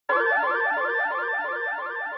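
Electronic warbling tone that starts suddenly: a high steady whistle over a lower pitch that wobbles up and down about five times a second, like an alarm or a radio being tuned.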